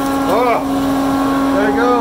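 Aurora DC 200 dust collector running with a steady hum, its blower pulling air hard through the flexible hose.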